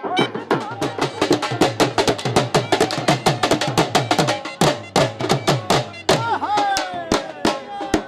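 Dhol, the double-headed barrel drum, beaten fast with sticks in a driving dance rhythm of dense rapid strokes.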